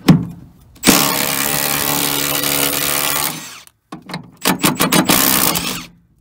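Milwaukee cordless impact driver running in reverse on a rusted door hinge bolt to loosen it. It makes one long steady burst of about two and a half seconds, then a quick string of short trigger bursts near the end.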